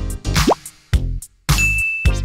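Upbeat background music with a steady beat, about two beats a second. A quick rising glide comes about half a second in, and a short high steady tone sounds near the end.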